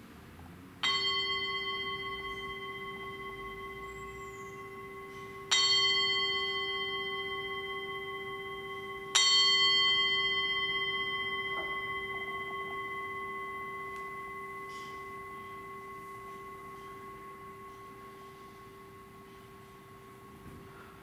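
Small metal singing bowl struck three times with a striker, about four seconds apart, each strike ringing out in several steady tones over a low hum. The last ring fades slowly over about ten seconds.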